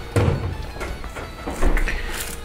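Background music with kitchen handling noises: a low thump just after the start and a cluster of sharp clicks and a knock near the end, as a carton of condensed milk is opened at the counter.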